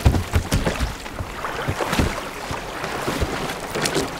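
Sea water splashing and sloshing around an inflatable boat, with irregular thuds as heavy bales are handed aboard, over wind.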